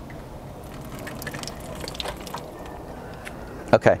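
Faint trickle and scattered drips of water from a Suburban RV water heater's opened pressure relief valve. Only a little water comes out because no water supply is connected to the tank.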